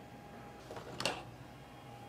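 Quiet room tone with a low steady hum, broken about a second in by one short, sharp click.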